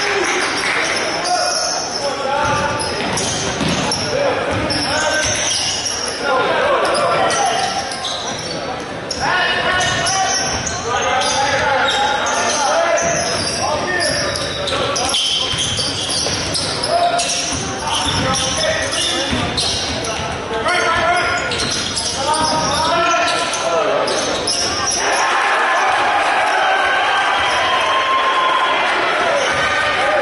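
Basketball bouncing on a hardwood gym floor during play, with players and coaches shouting and calling out in an echoing gymnasium.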